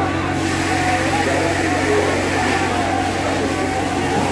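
Police water cannon truck's engine and pump running with a steady hum under the hiss of high-pressure water jets, which thickens about a third of a second in. A crowd shouts over it.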